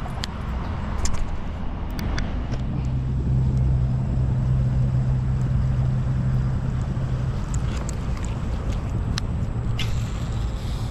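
A steady low engine drone, heaviest from about two and a half to seven and a half seconds in, with a few sharp clicks scattered through it.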